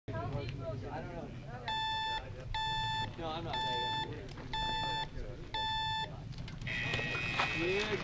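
Electronic start countdown timer beeping: five short beeps about a second apart, then a longer, higher-pitched beep near the end that signals go for the rider's stage start.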